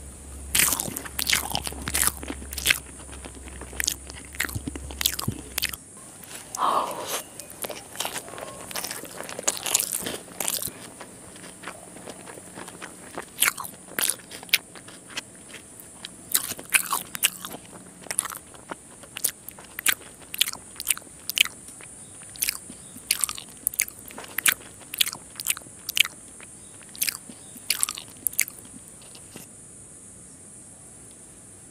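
Close-miked eating of rice, fish and raw onion by hand: many sharp, irregular crunches from biting and chewing crisp food. The crunches come in quick clusters with short gaps between them.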